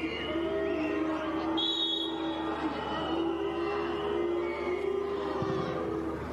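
Stadium crowd singing a sustained chant in the stands, long held notes that step in pitch every second or two.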